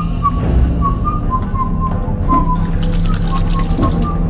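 A slow whistled melody of short, pure notes that wander up and down, over a steady low drone of eerie horror soundtrack music.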